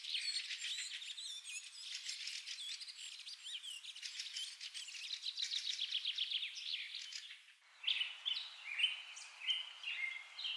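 Birds chirping, many short, high calls and trills overlapping. Near the end the sound briefly cuts out and resumes as a different stretch of birdsong over a steady hiss.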